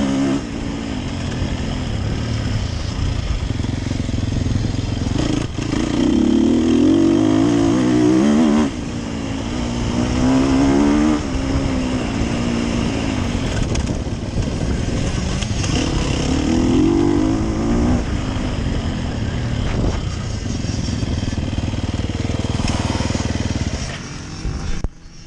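Sherco 300 SEF Factory's single-cylinder four-stroke enduro engine heard onboard while riding, its pitch rising and falling as the throttle is opened and closed, with several louder bursts of acceleration.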